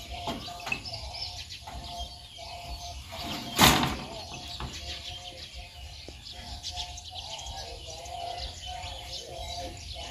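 Birds chirping and calling throughout, with a single loud thump about three and a half seconds in.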